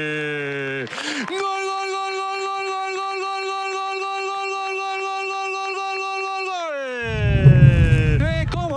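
A Spanish football commentator's drawn-out goal cry, "¡Gol!". It starts as a falling note, breaks off for a breath about a second in, then holds one steady note for about five seconds before sliding down in pitch near the end. A loud low whoosh comes in under the end of the cry.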